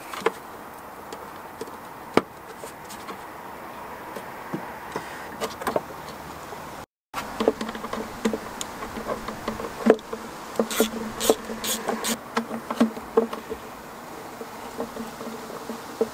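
A flying insect buzzing close to the microphone, a steady wavering drone. Light clicks and knocks come from hand work on the throttle cable and parts in the engine bay, busiest in the second half. There is a brief dropout to silence about seven seconds in.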